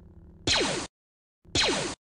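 Two Star Wars-style blaster-shot sound effects about a second apart, each a short zap that falls sharply in pitch.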